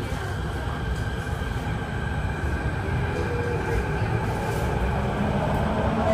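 Kawasaki-CRRC Sifang CT251 metro train running, heard from inside the passenger car: a steady rumble from the wheels and track with a faint steady whine above it, growing slightly louder.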